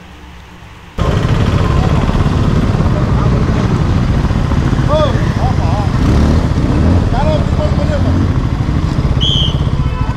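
Bajaj Pulsar NS200's single-cylinder engine running at low speed, heard loud and steady from the rider's seat, cutting in abruptly about a second in. Faint voices talk over it in the middle, and a short high chirp comes near the end.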